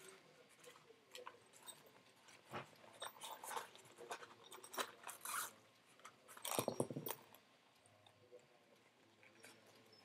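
Faint handling noise from a cloth barrel sock and the small parts inside it being rummaged through: scattered crinkles and light clicks, with a few louder bursts near the middle.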